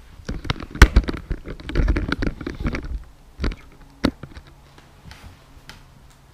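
Handling noise from a small camera being moved and set in place: a sharp knock about a second in, a stretch of bumping and rustling, and another knock about four seconds in.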